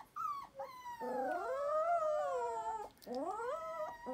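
Several Labradoodle puppies howling and whining together. A couple of short yelps come first, then long wavering cries overlap from about a second in, and another rising cry follows near the end.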